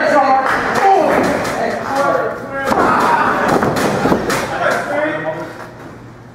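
A wrestler's body slammed onto the ring mat: a single heavy thud about two and a half seconds in, among men's voices talking.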